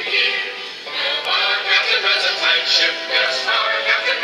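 A choir singing a Christmas song, several voices holding long notes together, amplified over the ship's loudspeakers and carried across the water.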